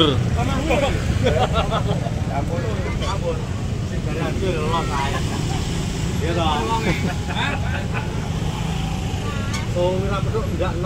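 Deep, steady bass rumble from a large outdoor 'sound horeg' sound system's subwoofers, with voices over it.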